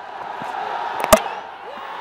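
Stadium crowd noise swelling, with a single sharp crack about a second in as the cricket ball hits the stumps to bowl the batsman, followed by the crowd cheering.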